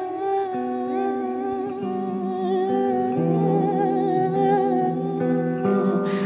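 Slow instrumental music on a hollow-body electric guitar: long held chords ring on, the bass note stepping down a couple of times, with a few short gliding notes over them and no sung words.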